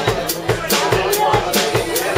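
Live rock band playing an instrumental jam: electric guitars and keyboard over a steady drum-kit beat.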